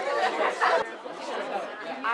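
Group chatter: several people talking over one another, with an abrupt break about a second in.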